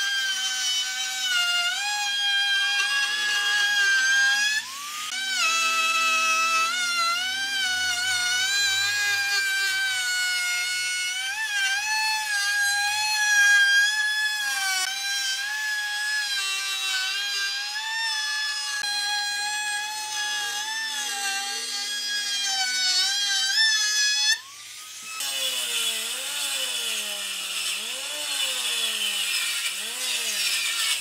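Handheld trim router's motor whining steadily as it rounds over the edges of a pine board, its pitch wavering a little with the load and dipping briefly about five seconds in. Near the end it gives way to a rougher, noisier cutting sound from a jointer-planer as a board is fed across it.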